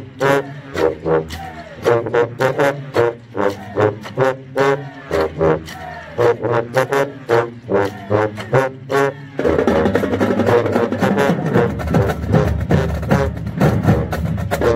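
Marching band sousaphones playing a punchy, rhythmic bass line in short detached notes, with snare drum hits. About nine seconds in the sound turns fuller and continuous, with held notes and more low end.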